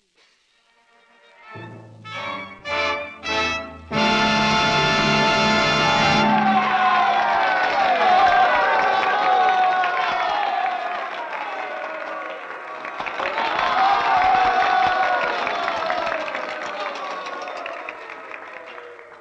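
A studio orchestra plays the closing bars of an opera: rising chords build to a loud held final chord about four seconds in. The chord gives way to an audience applauding and cheering, which swells again past the middle.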